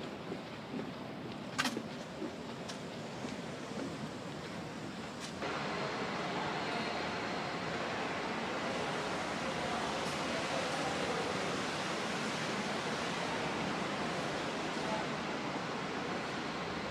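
Steady wind and running noise on the open deck of a steamship, with a sharp click about one and a half seconds in. About five seconds in it changes suddenly to a louder, steady rush of the ship's interior, with a faint high whine.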